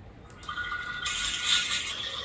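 Crinkling and scraping of plastic packaging as a green gel under-eye patch is peeled out of it. It starts about half a second in and gets louder about a second in.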